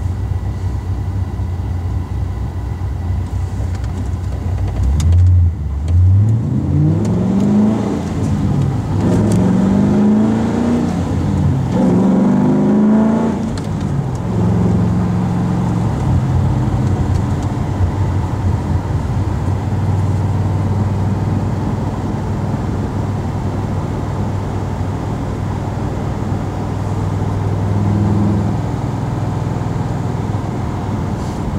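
Holden VZ Commodore SS V8 heard from inside the cabin. It starts near idle, then from about five seconds in accelerates through three rising sweeps in revs, one per gear as it shifts up. It then settles into a steady cruise.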